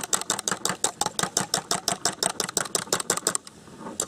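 A fork beating a raw egg in a bowl: quick, even clicks of the fork against the bowl, about eight a second, stopping about three and a half seconds in.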